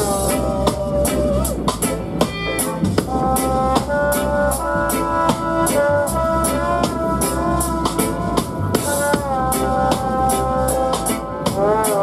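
Live reggae dub band playing: a steady drum-kit beat over deep bass, with a saxophone and trombone horn melody of held, sliding notes.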